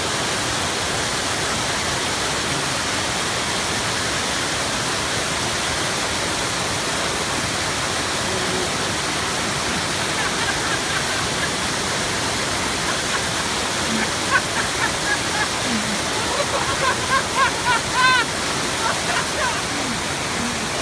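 Small waterfall cascading down a rocky creek over mossy boulders: a steady rush of white water.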